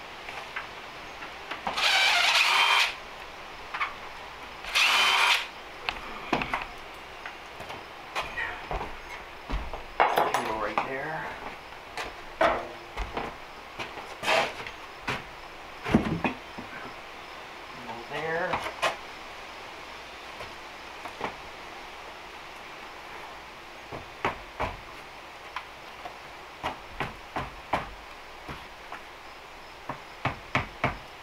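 Handheld cordless power tool run in two short bursts, the first about a second long and the second shorter, cutting into the wooden door framing. Scattered knocks and taps of wood follow.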